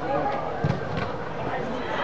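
Voices of players and spectators calling out in an indoor soccer dome, faint and mixed together, with a few short thuds.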